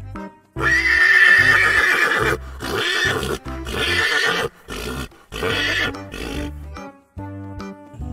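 A horse whinnying: one long, loud whinny starting about half a second in, then a run of shorter neighs, over background music.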